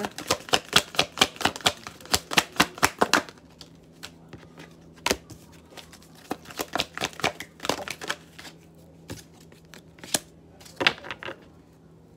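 A deck of oracle cards being shuffled by hand. It starts with a quick run of card slaps, about five a second, for roughly three seconds, then turns to scattered single taps and flicks as the shuffling goes on.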